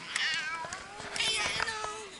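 A toddler's high-pitched, wavering squeals, two short cries, the second about a second in, sounding rather like a cat's meow.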